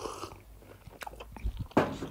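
A narrator's mouth noises close to the microphone between sentences: a few soft clicks of the lips and tongue.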